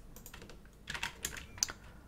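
Computer keyboard keys being pressed: a few light taps, then a quick cluster of sharper key clicks about a second in, as code is entered in the editor.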